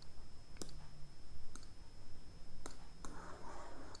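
About five sharp, irregularly spaced clicks of a computer pointing device as the drawing app's tools are used, with a short soft hiss shortly before the end.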